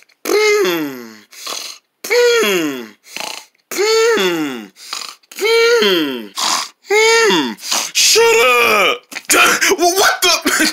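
A person's voice repeating a drawn-out vocal "dun", each one held and then falling in pitch, about seven times at roughly one-second intervals. Near the end it breaks into quicker, shorter sounds.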